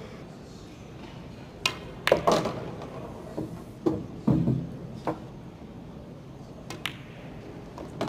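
Pool balls being played on a 9-ball table: a cue tip striking the cue ball and balls clicking off each other and the cushions, a scatter of sharp clicks over several seconds with a duller thud about four seconds in.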